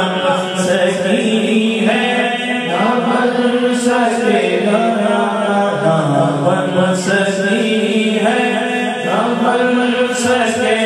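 A man's voice singing a naat, a devotional song, in long, drawn-out melodic phrases with held notes, through a microphone and PA.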